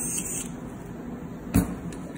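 A single sharp knock about one and a half seconds in as a Stryker 7000 battery-powered surgical drill is set down on the draped instrument table, over a steady hiss.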